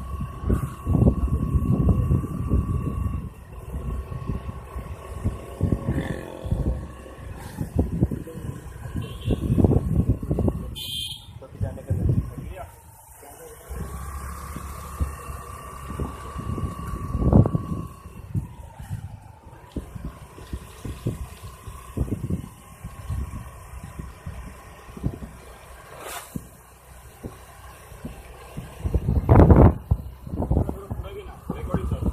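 Wind buffeting the microphone of a moving camera in irregular low gusts, over a thin steady high whine that comes and goes and dips in pitch briefly about two-thirds of the way through.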